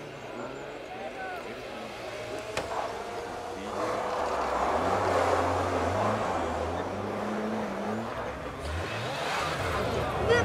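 Mitsubishi Lancer Evolution rally car's turbocharged four-cylinder engine approaching on a snowy stage. It gets much louder from about four seconds in, and the revs rise and fall as the car is driven through the corner.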